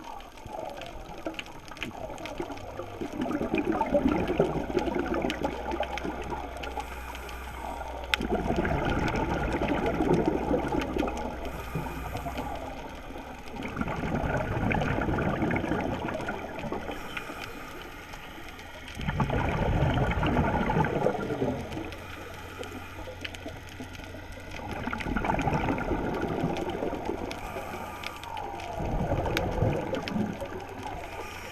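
Scuba diver's regulator breathing heard underwater: bursts of bubbling exhalation about every five to six seconds, with quieter stretches between.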